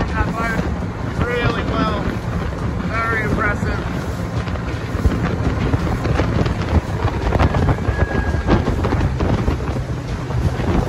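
Wind buffeting the microphone over a small boat running at speed on a Yamaha 70 hp outboard through choppy water. From about four seconds in there are frequent sharp knocks as the hull meets the chop.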